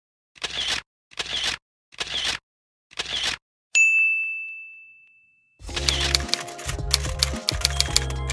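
Opening sound effects: four short rushes of noise, evenly spaced under a second apart, then a single clear bell ding that rings out and fades over about two seconds. Music with a bass line and a clicking beat starts near the end.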